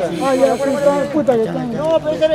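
Several people's voices talking over one another, with a faint hiss in the high end during the first second.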